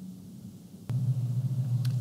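Faint room tone, then a sharp click about a second in, after which a low steady electrical hum starts and continues. The click and hum mark a splice into a new recording.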